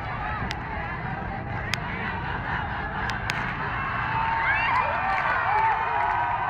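Large outdoor crowd, many voices shouting and calling over one another, with a few sharp knocks.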